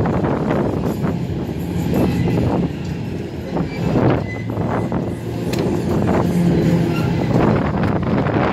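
A fairground ride running, heard from on board one of its cars: a steady, loud rumble and rattle of the moving ride, with a few short knocks along the way.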